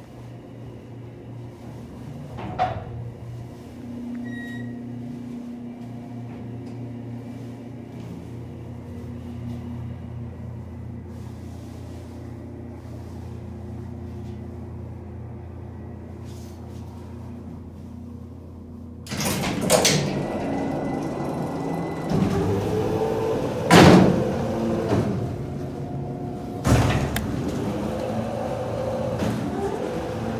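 Hydraulic freight elevator's pump unit humming steadily while the car travels. About 19 seconds in the car's mesh gate and bi-parting hoistway doors open with heavy rumbling and clanking, with several bangs; the loudest comes about 24 seconds in.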